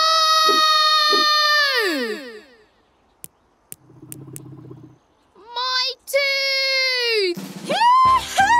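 Cartoon voices crying out in a long held wail that slides down in pitch and dies away; a few sharp clicks follow, then a second long wail that also falls away.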